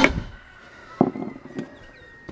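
Hammer striking the steel lock ring of a split-rim wheel, snugging the ring into its seat: one sharp metallic blow at the start and a weaker knock about a second in, with a faint ring from the steel hanging on.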